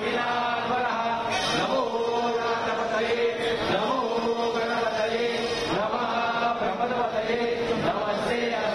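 A group of voices chanting a Hindu devotional chant in unison, steady and unbroken.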